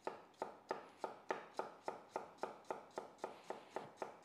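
A chef's knife slicing a fennel bulb thinly on a wooden chopping board: an even, steady rhythm of about four crisp cuts a second as each stroke goes through the bulb and taps the board.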